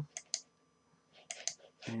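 A few light computer mouse clicks: two close together just after the start, then three or four more past the middle.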